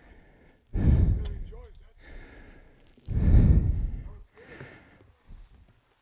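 A man breathing heavily close to the microphone: two loud, breathy exhalations about two and a half seconds apart, each fading off, then a softer one.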